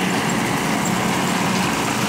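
Jacto K3000 coffee harvester running steadily while harvesting, a constant engine-and-machinery noise with a low hum.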